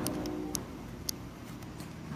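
Control knob on a ReVel transport ventilator clicking as it is turned step by step to raise the breath rate: a few sharp clicks in the first half second. A steady tone that stops about half a second in lies under the clicks.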